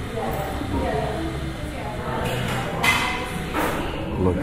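Background chatter of customers in a coffee house, with a few sharp knocks about two and a half to four seconds in, the loudest near the three-second mark.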